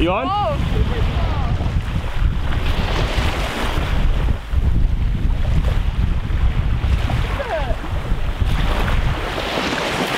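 Wind buffeting the microphone in a steady, gusting rumble, with small waves washing on the shore.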